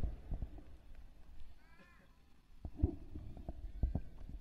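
A pause in a man's live speech, filled only by faint scattered knocks and clicks, with a brief faint high sound near the middle and a few louder knocks in the second half.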